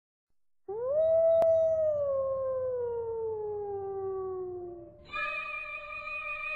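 A single long wolf howl that rises quickly at the start, then falls slowly in pitch over about four seconds. A sustained musical chord comes in near the end.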